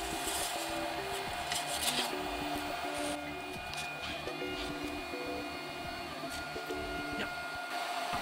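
Stepper motors of a RepRap Prusa i3 A602 3D printer whining as the print head and bed move, a series of short tones that jump in pitch every fraction of a second, over a steady fan hum.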